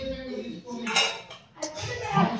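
Clinks and scrapes of a stainless steel plate being handled as bitter gourd pickle is mixed in it by hand, with a few sharp clinks, one near the start and one about a second in.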